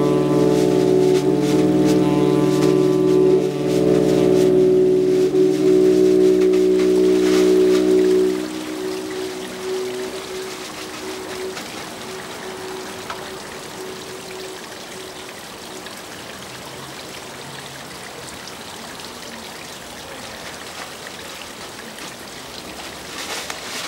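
Saxophone and bowed double bass holding long, low sustained notes together in free jazz; the notes stop about eight seconds in, one tone trailing off by about ten seconds. After that only a quiet, even hiss remains.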